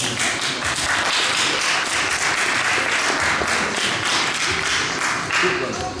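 Audience clapping, many hands in a dense, steady patter with voices mixed in. It starts at once and thins out near the end.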